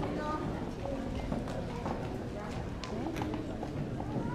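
Irregular light knocks and shuffling of children's feet on the stage risers, under a low murmur of young voices.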